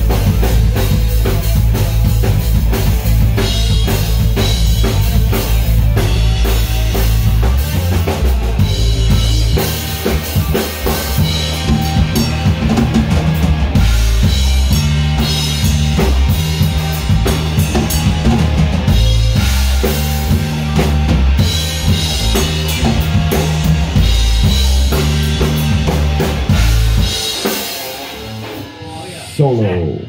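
Rock band playing live in a small room: drum kit, electric bass and electric guitar together, with heavy bass notes and steady drumming. About 27 seconds in the band stops and the instruments ring out.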